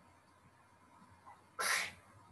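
Faint room tone, broken about one and a half seconds in by a single short, sudden burst of breathy noise lasting about a third of a second.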